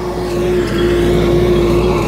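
Kubota L5018 tractor's diesel engine running steadily under load as it pulls a disc plough through dry soil: a constant drone with a steady hum.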